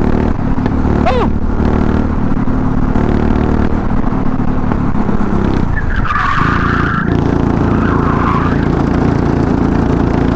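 Go-kart engine running hard, heard from the driver's seat. Around six seconds in, the engine note eases through a corner and a brief tyre squeal sounds twice, then the engine pulls steadily again.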